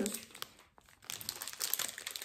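Plastic sweet wrappers crinkling as they are handled and passed between hands. After a brief quiet moment about halfway through, it comes in a run of short rustles.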